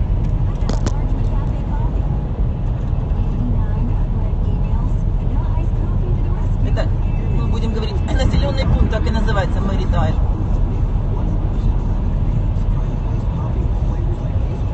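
Steady low rumble of a car driving on the road, heard from inside the cabin. A voice sounds over it for a few seconds, from about seven to ten seconds in.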